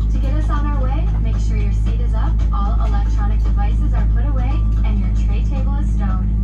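Steady low drone inside a Boeing 787-9 cabin during pushback, with a voice from the safety video playing over the cabin speakers throughout.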